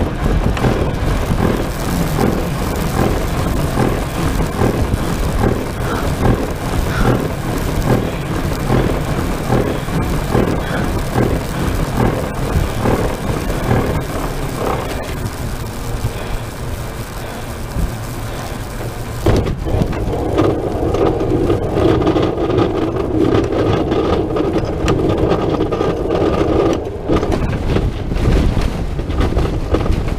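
Continuous rush of wind and rattling in the cockpit of the Aerocycle 3 human-powered aircraft, with many fast clicks through the first half. A steady droning hum joins about two-thirds of the way through.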